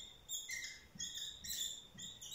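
Dry-erase marker squeaking across a whiteboard in a run of short, high strokes as a word is written.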